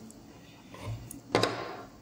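Handling of a USB meter and the solar panel's fabric-covered junction box as the meter is plugged into its USB port: soft fumbling, then one short, sharp noise about one and a half seconds in.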